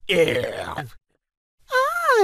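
Animated letter characters' vocal sound effects: a short, gravelly groan-like burst, then, about one and a half seconds in, a higher voiced cry that rises and falls in pitch.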